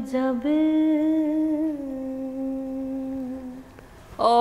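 A woman singing unaccompanied: a short phrase breaks off, then one long held note steps down once and fades out just before the end.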